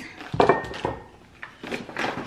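Lemons set down on a kitchen counter: a sharp knock with a short clatter about half a second in and a second knock soon after. Near the end comes fainter rustling as a hand rummages in a paper grocery bag.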